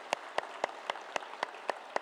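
Hand clapping in a steady beat, about four claps a second, over the softer sound of a congregation applauding.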